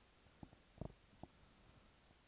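Faint computer mouse clicks: four or five short clicks, the loudest a close double click a little under a second in.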